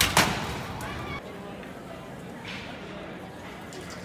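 Two sharp blows of hand tools striking a building's glass-and-metal entrance doors, in quick succession at the very start, followed by voices and street noise.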